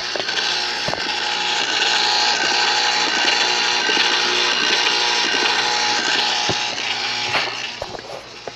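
Small electric ice cream maker running: its motor whirs steadily as the paddle churns the mix in the bowl, with a few light clicks. The sound drops away near the end.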